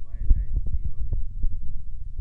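A low thumping rumble with a run of short knocks, and a brief faint voice-like sound near the start.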